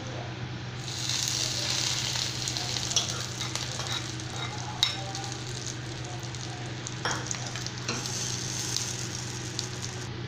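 A hot-oil tempering of mustard seeds and curry leaves sizzling as it is poured onto radish chutney in a steel bowl, the hiss rising about a second in and carrying on steadily. A few light clicks come over it.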